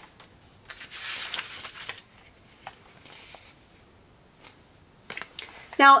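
Paper pages of a small hard-cover coloring book being handled and turned: a soft rustle about a second in and a shorter one about three seconds in, with a few light taps and clicks.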